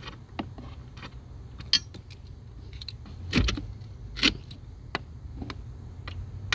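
Socket and extension working the battery hold-down bolt: scattered light metallic clicks and creaks, with two louder knocks in the middle.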